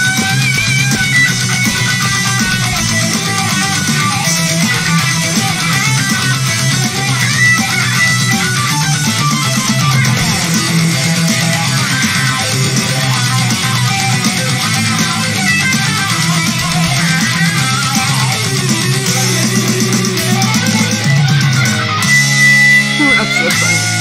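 Heavy metal song playing, with distorted electric guitars and a wavering lead guitar line over the band; the sound thins to held notes near the end.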